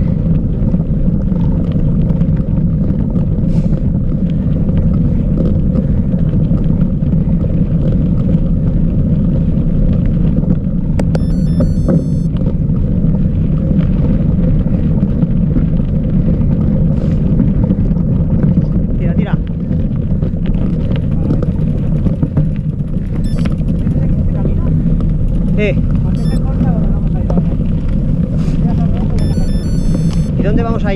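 Steady low rumble from a mountain bike riding on a loose gravel track, picked up by the rider's camera: wind on the microphone mixed with tyre noise on stones. Brief high chirps about eleven seconds in and again near the end.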